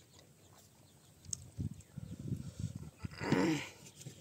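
An animal calls once, a short cry falling in pitch about three seconds in, after a run of low, rough sounds.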